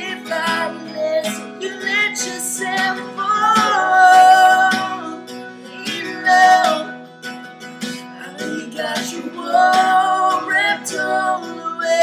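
Acoustic guitar strummed, with a voice singing long held notes and runs over it.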